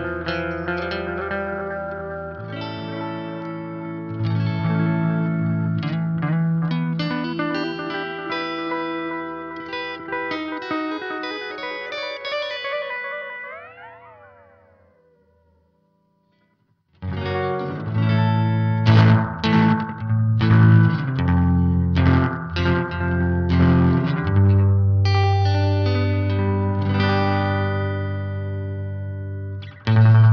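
Electric guitar played through a Greer Black Tiger oil-can style delay pedal, chords and notes trailed by echoing repeats. About 13 seconds in, the repeats bend in pitch and die away to silence. About 17 seconds in, picked notes with repeats start again.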